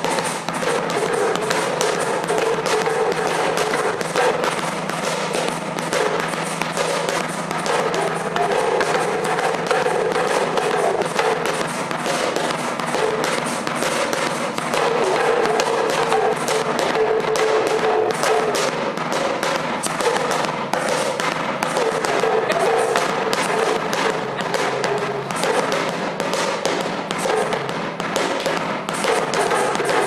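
Live hand-percussion jam: an atumpan drum struck with a curved stick and hand shakers, playing a dense, continuous rhythm of rapid strikes.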